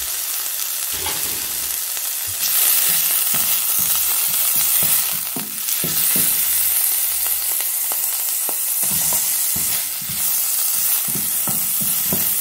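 Ginger, and then onion pieces, frying and sizzling in hot oil in a non-stick pan, stirred with a wooden spatula that scrapes and knocks against the pan. The sizzle grows louder about two and a half seconds in.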